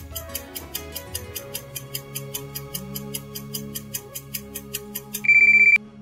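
Quiz countdown-timer sound effect: fast, even clock-like ticks, about five a second, over soft sustained background music. It ends near the end in a loud, steady, half-second electronic beep signalling that time is up, just before the answer is revealed.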